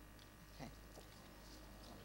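Near silence: the room tone of a hall over the lectern microphone, with a faint brief sound about half a second in.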